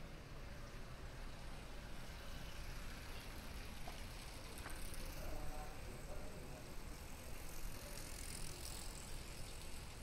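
A bicycle rolling past close by, faint, over a low steady background rumble of a quiet street.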